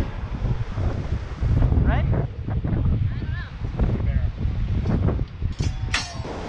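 Wind buffeting the microphone, an irregular low rumble, with short snatches of people talking over it.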